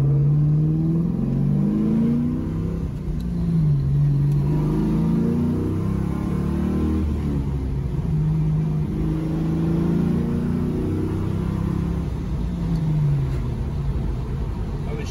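1973 Camaro restomod's engine and aggressive exhaust under hard acceleration with a manual gearbox, heard from inside the cabin. The pitch climbs as it revs up, then drops back at each upshift, about three times, with some exhaust resonance in the cockpit.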